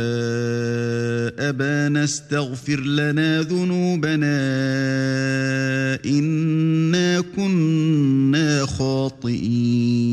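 A male voice chanting Quranic recitation in Arabic, holding long, steady melodic notes and breaking off briefly several times between phrases.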